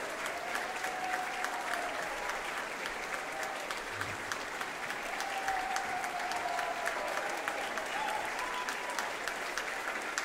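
Audience applauding steadily: dense, even clapping from a large crowd.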